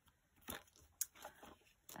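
Faint crinkling of clear plastic binder pockets holding banknotes as they are turned by hand, with a short rustle about half a second in and a sharp click about a second in.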